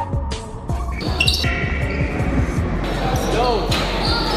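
Basketball game sound: the ball thudding on the court amid crowd voices, under background music with a steady bass line.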